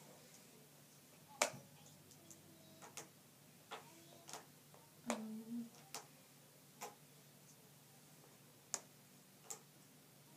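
Faint, irregular light clicks and taps, about nine of them, of letter tiles or cards being handled and set in place on a board. A brief low hummed 'mm' comes about five seconds in.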